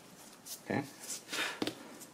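A few faint, short scrapes and rustles from gloved hands handling a strip of vegetable-tanned leather and a hand-held edge beveler on paper, ending in one short click.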